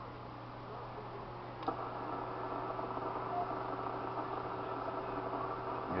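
A click as the transmit key is released, then a Yaesu FT-897D's speaker carrying the weak FM signal of a distant 2-meter repeater at S1: a steady hiss with a faint steady tone and a short beep about three and a half seconds in. A low steady hum runs beneath it.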